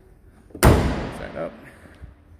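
The hood of a 2015 Corvette Z06 slammed shut once, about half a second in, with a sharp bang that rings out briefly in the garage.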